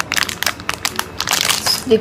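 Plastic snack wrapper crinkling as a pack of cream wafers is handled, a rapid run of small crackles.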